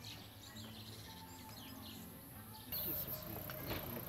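Faint outdoor ambience with scattered small-bird chirps. A steady high-pitched hiss comes in a little under three seconds in.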